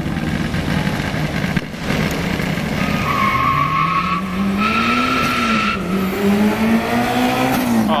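Car engine accelerating hard down a drag strip, its pitch climbing steadily, dropping at a gear change about six seconds in, then climbing again. A high, steady squeal sounds from about three to nearly six seconds in.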